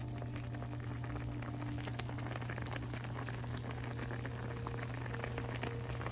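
Cooking liquid bubbling steadily in a pan of king crab legs and asparagus, a dense crackle of many small pops, over a steady low hum.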